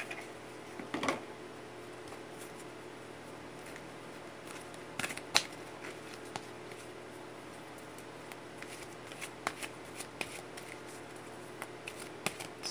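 A deck of Myths and Mermaids oracle cards shuffled by hand: soft, scattered card-on-card slaps and rustles, with a sharper snap about five seconds in.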